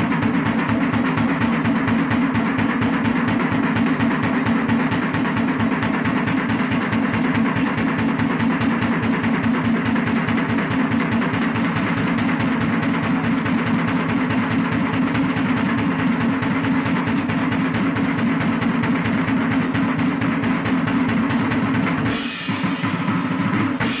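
Live hard-rock band recording led by a drum kit playing fast, continuous rolls, over a steady low drone.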